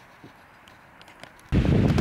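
A quiet stretch with faint background hiss, then, about three quarters of the way through, a sudden loud rumble of wind on the microphone. A man's voice begins a shout right at the end.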